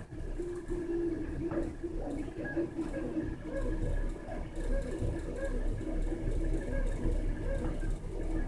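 3D printers running inside an enclosure: short motor tones that jump in pitch every fraction of a second, over a steady thin whine and a low hum from the enclosure's exhaust fan.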